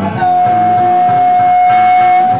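A harmonica holding one long, steady high note over a live blues-rock band, starting about a quarter second in.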